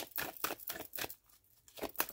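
A deck of oracle cards being shuffled by hand: a quick run of dry card flicks and clicks, thinning out briefly after the middle and picking up again near the end.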